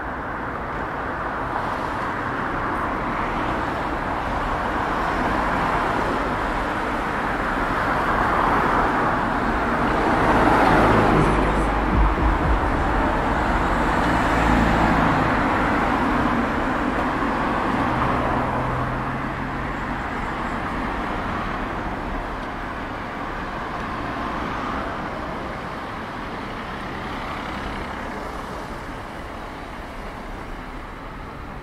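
Cars passing along a city street: traffic noise swells to its loudest about ten seconds in as vehicles go by close to the microphone, then gradually eases off.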